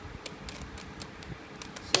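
Plastic 3x3 Rubik's cube being twisted by hand: several light clicks as the middle slice is turned 180 degrees, the loudest click near the end.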